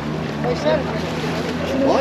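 Small open tour boat's motor running with a steady low hum, under wind and water noise.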